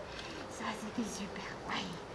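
Soft, low human speech close to a whisper, the words indistinct.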